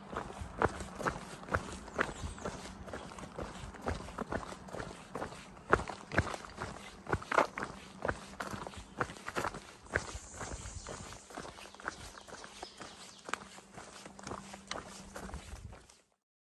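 Footsteps of a hiker walking along a dirt forest trail, a steady crunch about two steps a second.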